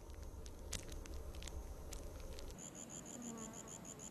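An insect, cricket-like, chirping in rapid, even pulses of a high tone, which starts about two-thirds of the way in. Before it there is a low rumble with scattered faint clicks.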